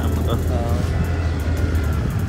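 Yamaha scooter being ridden along a rough unpaved road: a steady low rumble of engine and wind on the microphone. A few faint words come in about half a second in.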